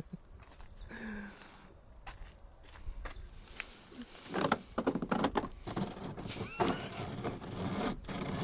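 A wet rope and a steel carabiner being handled at a car's screw-in tow hook: after a quiet start, irregular knocks, clinks and scraping rustles from about halfway through.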